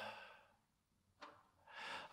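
Near silence in a speaker's pause: a drawn-out "uh" fades out in the first half second, a faint mouth click comes a little past the middle, and a short inhale follows just before speech resumes.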